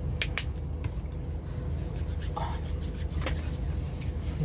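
Hands rubbing together, likely sanitising with rubbing alcohol, after two short sharp clicks near the start. Under it runs the steady low hum of a car engine idling.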